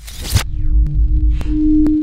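Logo-animation sound effect: a noisy whoosh-like hit opens into a deep rumble, with a steady ringing tone that comes in about half a second in and swells louder near the end. Three sharp clicks are spaced across the second half.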